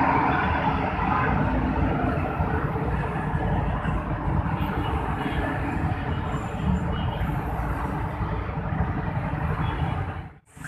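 Steady city-road traffic: the engines and tyres of cars, motorcycles and auto-rickshaws making a continuous rumble. It is slightly louder at the start as a coach drives away.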